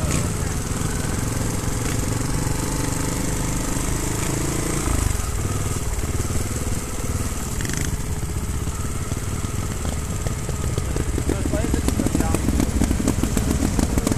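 Trials motorcycle engine running at low revs on a slow climb, settling toward idle near the end as the bike stops.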